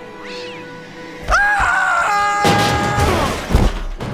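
Animated-film fight soundtrack over orchestral score. About a second in comes a loud, drawn-out cry, followed by a noisy scuffle with crashing and clattering metal trash cans and a sharp hit near the end.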